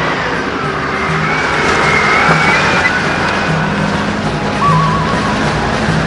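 A car driving, its engine and road noise heard under background music.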